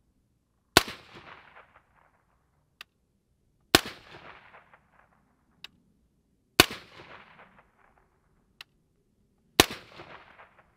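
Four suppressed 5.56 rifle shots (55-grain) from a 10.5-inch LMT AR-15 fitted with a Rex Silentium MG7 .224 suppressor, about three seconds apart, each a sharp report trailing off over about a second of echo. A faint sharp tick follows each shot about two seconds later.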